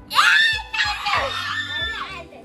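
Young girls shrieking with laughter, a loud high-pitched outburst that begins just after the start and runs on, over steady background music.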